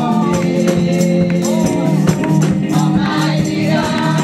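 Gospel praise singing by a small group of women on microphones, with sung lines gliding over sustained low chords and a steady beat of percussion hits.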